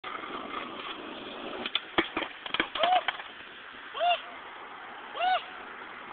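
Skateboard wheels rolling on rough asphalt, then a quick clatter of the board hitting the pavement and curb about two seconds in. This is followed by a man crying out "Oh!" three times in pain after the board strikes him.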